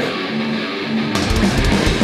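Thrash metal band playing live with distorted electric guitars. For about the first second the guitar riff sounds almost alone; then the drums and crashing cymbals come back in with the full band.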